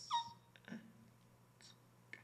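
A person's voice through a microphone: a short high cry that falls in pitch, then a low falling grunt about three quarters of a second in, with breathy sounds around them.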